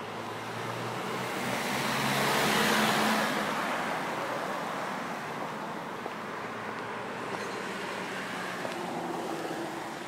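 A car driving past on the road: its tyre and engine noise swells to a peak about three seconds in, then slowly fades.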